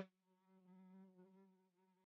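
Near silence, with a very faint, steady buzz of a housefly sound effect lingering.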